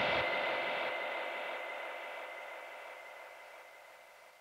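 Closing tail of a techno track: after the beat drops out, a hissing wash of noise with a faint steady tone fades away evenly, dying out about three and a half seconds in.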